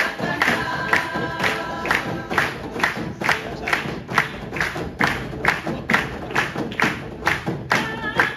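Women's vocal group singing a Galician traditional song together over a steady beat of hand-struck frame drums and tambourines, about two strokes a second.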